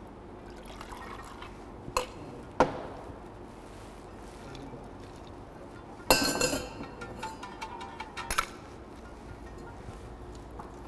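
Metal cocktail shaker tins clinking and knocking as an iced vodka martini is handled between them, with liquid pouring. Two sharp clinks come about two seconds in, and a louder ringing metallic clank about six seconds in, followed by smaller knocks.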